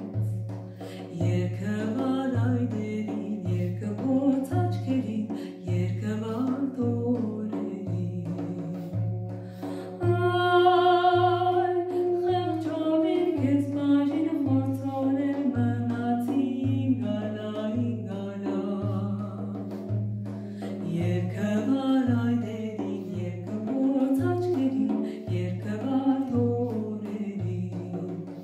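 A woman singing an Armenian folk song with a frame drum and a wooden wind instrument. The drum keeps an even low beat, about one and a half strokes a second, under a slow, ornamented vocal line.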